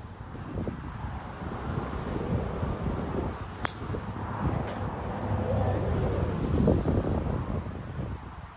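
A single sharp crack of a driver striking a golf ball off the tee about three and a half seconds in, over a steady low rumble of wind on the microphone.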